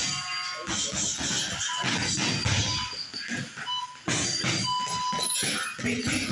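Gloved punches landing on heavy punching bags in quick, irregular strikes, with music playing in the background.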